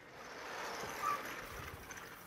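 Chalkboard eraser rubbing across a blackboard: a steady swishing scrape that swells over the first second and then fades, with a brief squeak about a second in.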